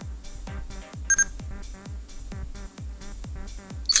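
Electronic background music with a steady beat of about four kick drums a second. A short, high electronic beep sounds once about a second in.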